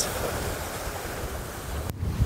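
Rough surf washing over a rocky shoreline, a steady rushing of breaking waves with wind rumbling on the microphone. It cuts off abruptly just before the end.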